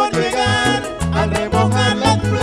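Live vallenato band playing an instrumental passage between sung verses: button accordion carrying the melody over a bass line and steady percussion.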